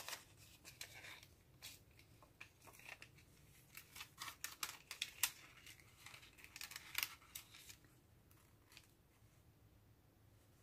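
Faint crinkling and crackling of a thin plastic rub-on transfer sticker sheet being handled and its backing lifted: a run of short crackles, thickest in the middle, dying away near the end.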